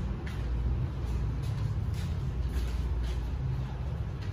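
A steady low rumble with a few faint taps.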